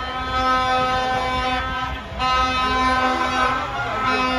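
Several horns sounding together in long, steady held blasts, with a brief break about halfway through, over a low rumble of street traffic.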